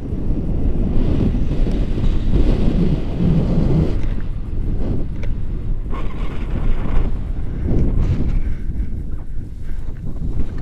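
Wind buffeting an action camera's microphone during a tandem paraglider flight: a loud, uneven low rumble that swells and eases throughout.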